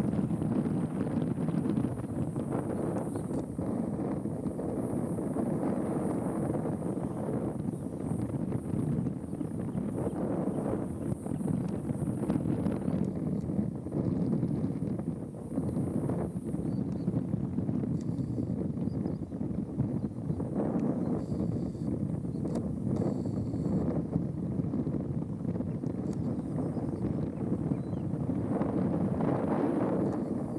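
Wind blowing across the microphone: a steady low rush with no distinct events.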